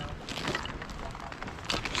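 Footsteps in snow on thin lake ice, with a few faint clicks under a low steady rumble.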